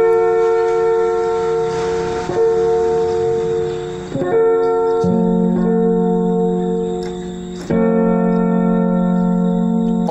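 Electronic keyboard playing held F major chords in inversion, C-F-A, the notes sustained at an even level without fading. The chord is re-struck or changed every one to three seconds, and a lower bass note joins about five seconds in.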